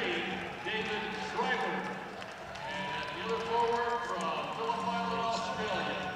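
Indistinct chatter of several voices talking over one another in a large basketball arena, over a steady low hum.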